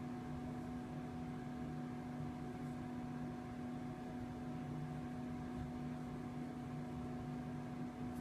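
A steady low hum with several constant tones over a faint hiss.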